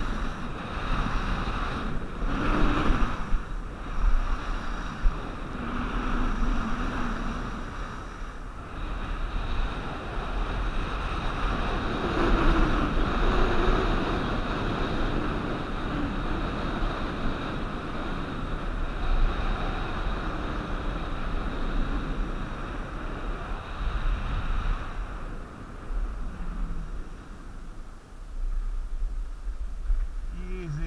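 Skis hissing and scraping over groomed snow on a downhill run, with wind buffeting the camera's microphone. The noise swells and eases as the turns go by.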